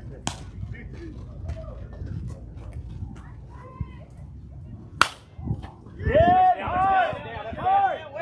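A softball bat hits a pitched ball with a single sharp crack about five seconds in, after a fainter click near the start. Loud shouting from players follows right after the hit.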